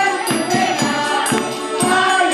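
Music: a group of voices singing together over jingling, tambourine-like percussion that keeps a steady beat.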